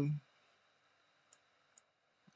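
Two faint computer mouse clicks, about half a second apart, in the second half.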